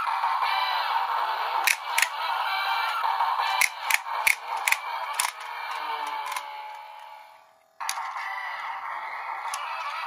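Kamen Rider Drive Driver toy belt playing its electronic standby music through its small, bass-less speaker, with a handful of sharp clicks between about two and five seconds in. The music fades away, then cuts back in suddenly near the end.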